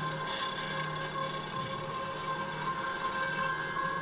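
A steady, quiet drone with a couple of faint high tones held throughout, under a faint rasping haze.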